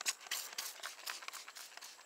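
Hand trigger spray bottle spritzing diluted rinseless wash onto a car's paint: a few short hissing sprays in the first second, then fainter ones.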